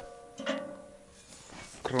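Steel door of a homemade welded stove clanking against the stove body about half a second in, the steel ringing for about a second afterwards.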